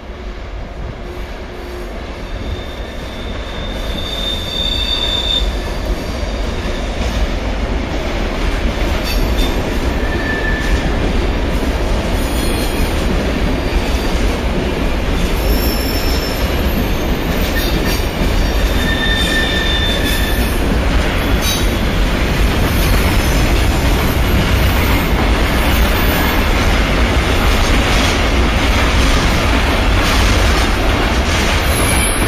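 Locomotive-hauled train of Corail passenger coaches rolling slowly through curved station trackwork, growing louder over the first few seconds as it approaches and passes. Steady rumble of wheels on rail, with several brief high-pitched wheel squeals on the curves.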